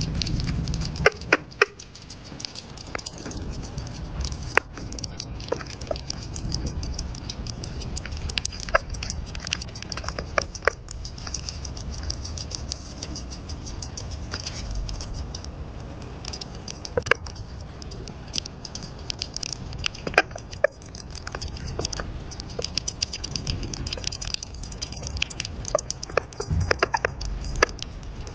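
Sugar glider eating an egg-filled female silkworm moth, close up: a steady, irregular run of small chewing clicks and mouth smacks.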